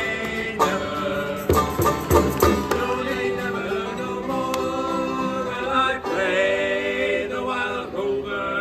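Acoustic folk band, with Guild D25 acoustic guitar, Deering banjo, Tacoma acoustic bass and bodhrán, playing under group singing of a trad Irish chorus. A few sharp beats land together about one and a half to two and a half seconds in, then the voices hold long notes.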